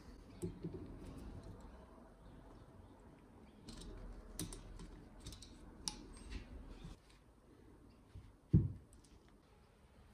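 Faint metallic clicks and light scraping of pliers working the power-valve tensioner spring on an aluminium two-stroke dirt-bike cylinder, then a single dull thump near the end as the cylinder is turned and set down on the bench.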